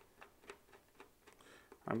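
A string of faint, irregular light ticks as small screws and a screwdriver are handled at a balsa wing's servo bay.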